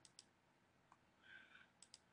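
Near silence with faint computer mouse clicks: two just after the start and two near the end, and a faint brief rustle in between.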